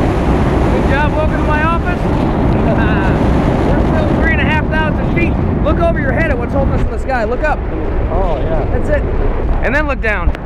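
Wind buffeting the microphone during a tandem parachute descent under an open canopy, a steady low rumble, with voices talking over it.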